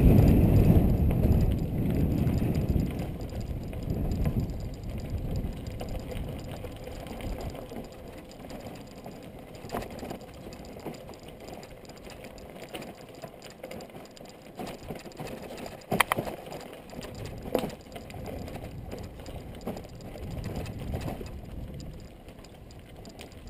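Mountain bike rolling over a rough dirt trail: rumbling tyres and a steady rattle from the bike, loudest in the first few seconds and then quieter, with two sharp knocks about two-thirds of the way through.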